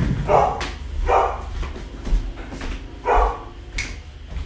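A pet dog barking three times: two barks about a second apart, then one more after a pause of about two seconds.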